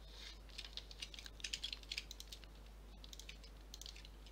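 Faint clicking of computer keyboard keys in two quick runs, with a short pause between them.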